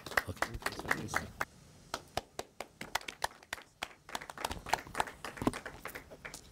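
Light, scattered clapping from a small audience, a few irregular claps a second.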